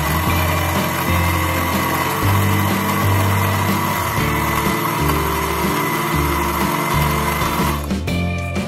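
Small 100-watt electric countertop blender running flat out, grinding lumps of hardened cement into powder, with a steady high motor whine. It cuts off suddenly just before the end.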